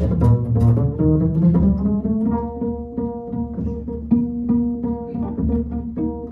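Live jazz trio of violin, double bass and piano playing a Dixieland-style tune, the double bass plucked under held melody notes and piano chords.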